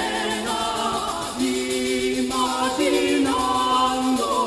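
A small early-music vocal ensemble singing polyphony, several voices at once in long held notes that move to new pitches every second or so, with a woman's soprano among the parts.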